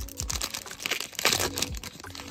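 Shiny plastic wrapper of a Bowman Chrome Mega Box trading-card pack crinkling as it is torn and peeled open by hand, in irregular crackles with a louder spell a little past the middle.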